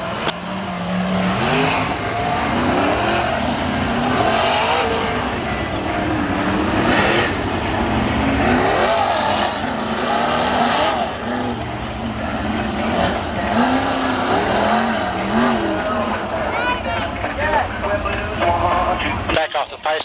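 Winged sprint cars' V8 engines running on a dirt oval during pace laps behind the pace car, revs rising and falling, with a louder surge every few seconds as cars go by. The sound cuts off suddenly just before the end.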